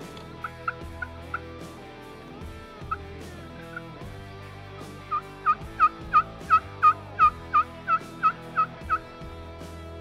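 A hand-held turkey call worked in hen yelps: a few soft yelps first, then a loud run of about a dozen yelps at roughly three a second. The calling is meant to get gobblers to answer.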